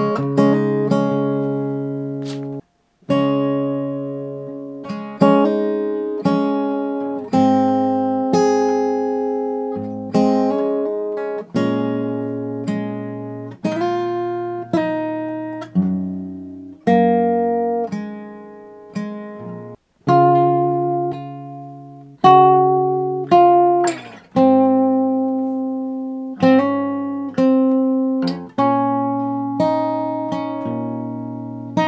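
Steel-string acoustic guitar with a capo, played in slow strummed chords, one every second or two, each left to ring out and fade, with two brief stops.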